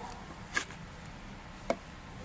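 Two short plastic knocks about a second apart, as the washer pumps are handled in the plastic windscreen-washer reservoir, over a low steady hum.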